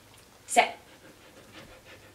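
Samoyed dog panting faintly with quick, short breaths.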